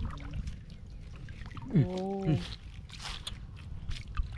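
Water sloshing and trickling through a woven bamboo basket scoop held in shallow floodwater, with scattered small splashes. A short spoken call about two seconds in is the loudest moment.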